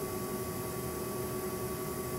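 Steady room tone: an even background hiss with a low, constant hum and a few faint steady tones, with no distinct event.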